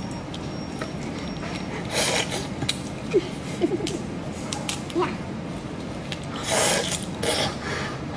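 Raw shrimp shells being cracked and pulled apart by gloved hands: scattered small clicks and crackles, with louder rustling bursts about two seconds in and again near seven seconds.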